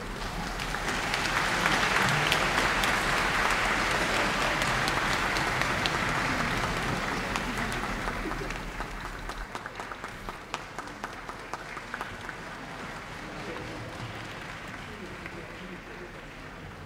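Concert-hall audience applauding: the applause swells over the first two seconds, holds, then thins after about eight seconds into scattered separate claps.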